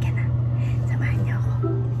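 A woman whispering over background music that holds a steady low tone.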